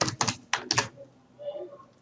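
Computer keyboard typing: about five or six quick keystrokes in the first second, then a quieter stretch.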